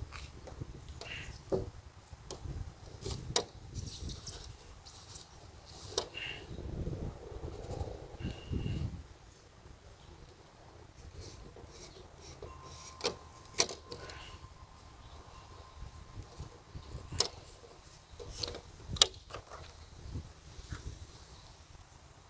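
Quiet, scattered clicks and ticks of a rear wiper blade being handled as its rubber insert is pulled out of the metal frame, with a low rumble from handling about a third of the way in.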